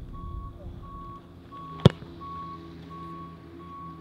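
A vehicle's reversing alarm beeping steadily, one tone repeating about three times every two seconds, over the low running of its engine. One sharp thump near the middle is the loudest sound.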